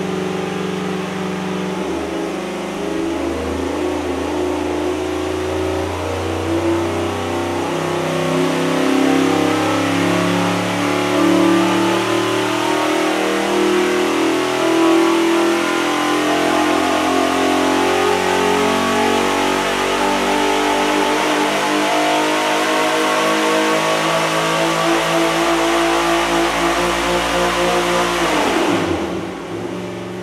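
Naturally aspirated 427 cubic-inch LT1 V8 running at full throttle on an engine dynamometer during a power pull. Its note climbs slowly in pitch as the revs build, then the throttle closes near the end and the revs drop quickly.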